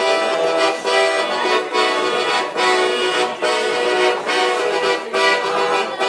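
Piano accordion playing a tune solo: full, sustained chords with a regular pulse, the sound dipping briefly a little under once a second.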